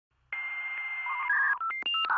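Electronic intro jingle made of telephone-like tones: a steady buzzy tone starting about a third of a second in and holding for about a second, then a quick run of short beeps stepping up and down in pitch, like keypad dialing tones.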